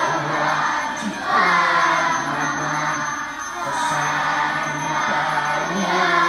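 Many voices chanting a Hindu devotional song in unison, in long held phrases with short breaks between them.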